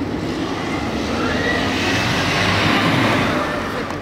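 A vehicle passing close by on the street: a rushing noise that builds to a peak about two and a half seconds in, then fades.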